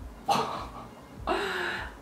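A woman gasping twice in amazement: two short, breathy sounds about a second apart.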